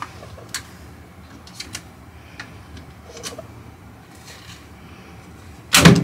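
Scattered light clicks and taps of plastic vacuum cleaner parts being taken apart and handled, then a loud knock near the end.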